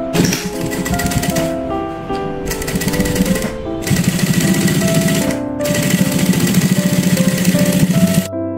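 JUKI industrial sewing machine stitching at speed along a zipper seam through cotton fabric: a fast, even chatter of needle strokes, broken by a few short pauses.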